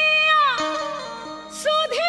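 Bhojpuri purbi folk song: a female voice holds a high note that slides down and fades over a soft, steady accompaniment, then a short breath-like hiss comes before the next sung phrase begins near the end.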